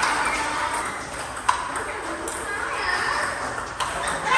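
Celluloid-type plastic table tennis balls clicking off bats and the table in a coach-fed multi-ball drill against underspin, the player hitting with short-pimpled rubber. A handful of sharp clicks, the loudest about a second and a half in, ring in a large hall over background voices.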